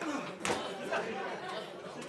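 Several people talking over one another in a large room, with one sharp knock about half a second in.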